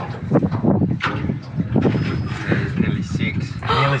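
Indistinct talk among people on a small boat, over a steady low hum, with a clearer spoken word near the end.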